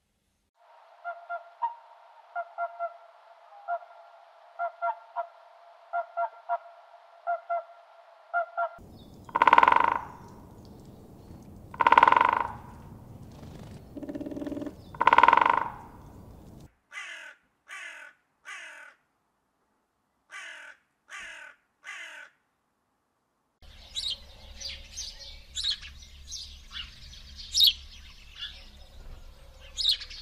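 A run of bird recordings. Swans call steadily for the first eight seconds, then a hooded crow gives three loud caws. Then come short sharp calls of a great spotted woodpecker in sets of three, and house sparrows chirping busily in the last third.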